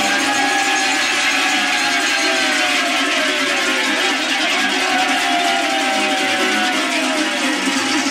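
A group of large cowbells (talăngi) shaken hard together in a continuous, dense clanging, with a few tones that slide down in pitch over it. The clangour is the traditional answer to the call that ends a verse of the Romanian New Year urătură.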